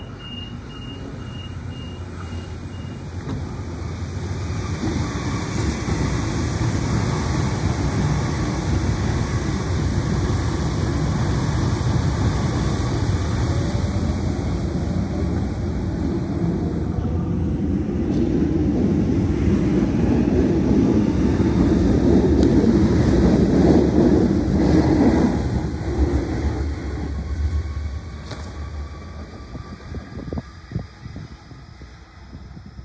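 Sydney Trains double-deck electric train running past the platform: rumble and wheel noise build to their loudest a little past the middle and fade as it draws away, with a faint rising motor whine. A row of short quick beeps sounds at the very start.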